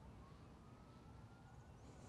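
Near silence, with a faint distant siren wail rising slowly in pitch and starting to fall near the end.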